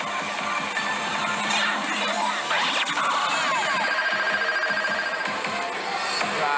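Pachislot slot machine electronic music and sound effects over the din of a pachinko hall, with a held electronic tone in the middle.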